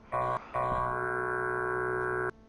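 Electronic synthesizer tones: a short held note, a brief gap, then a longer sustained chord that cuts off abruptly.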